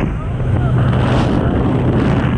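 Loud, steady wind and engine noise at the open door of a small high-wing jump plane in flight. The aircraft engine gives a steady low drone under the rushing air, with wind buffeting the microphone.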